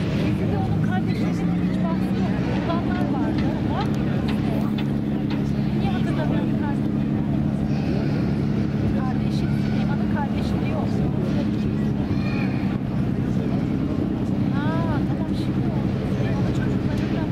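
A boat engine's steady low drone, with people talking in the background and a short chirping call near the end.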